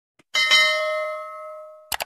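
Bell-like 'ding' sound effect from an animated subscribe-button intro, struck once and ringing as it fades over about a second and a half. A quick double mouse-click sound effect follows near the end.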